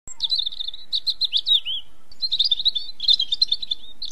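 Songbird singing a rapid, high chirping warble in four quick phrases with short pauses between them.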